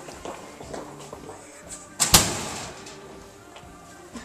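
A single loud door slam about two seconds in, a quick double strike with a short ringing tail, over background music.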